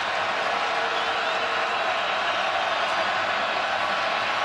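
Steady noise of a large football stadium crowd, thousands of fans yelling together during a third-down play.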